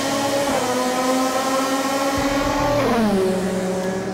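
A race car engine running at high revs, its pitch climbing slowly, then dropping sharply about three seconds in.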